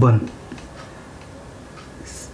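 Whiteboard marker writing a numeral on the board: a few faint ticks from the marker tip, after a short spoken word at the start.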